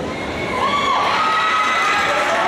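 A crowd of teenage spectators cheering and screaming in a gym, many high voices at once, swelling about half a second in.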